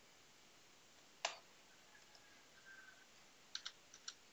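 A few isolated computer keyboard keystrokes over faint room tone: a single click about a second in and a quick pair near the end.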